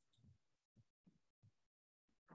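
Near silence, with only a few very faint low blips.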